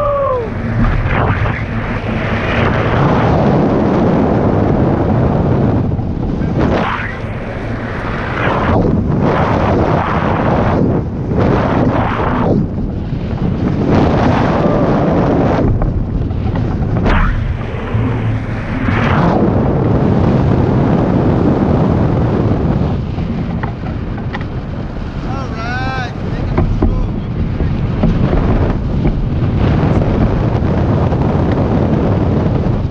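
Wind buffeting the microphone of a camera mounted on a hang glider's wing in flight: a loud, gusty rush that swells and eases every few seconds.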